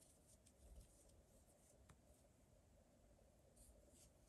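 Near silence with a few faint, light ticks and rustles of a crochet hook working yarn as chains and slip stitches are made.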